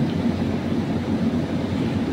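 A steady low rumble of background noise with no clear tone or rhythm.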